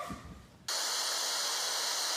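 Steady hiss of TV static, a white-noise transition sound effect between clips, cutting in abruptly a little under a second in and holding at one level.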